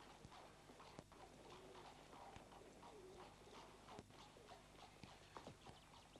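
Faint horse hooves clip-clopping, heard as scattered clops under a low murmur of background voices.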